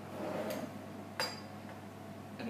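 A spoon scraping in a glass jar of maraschino cherries, then one sharp clink of the spoon against the glass a little past a second in.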